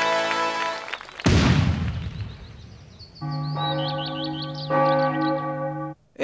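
A single cannon shot about a second in, loud and sudden, with a long fading rumble, set between stretches of sustained music with bell-like tones.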